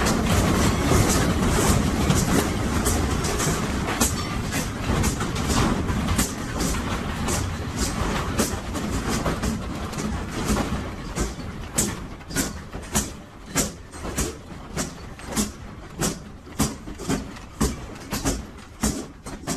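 Office furniture and fittings rattling and banging without pause as the building shakes in a strong earthquake. After about eleven seconds the din thins into a regular knocking, about two knocks a second, as loose objects swing back and forth with the building's sway.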